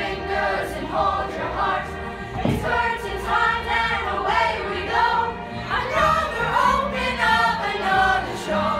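A group of young performers singing together as a chorus over a recorded musical backing track.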